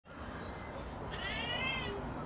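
A juvenile Australian magpie giving a single drawn-out whining begging call, rising a little and falling away, starting about halfway in.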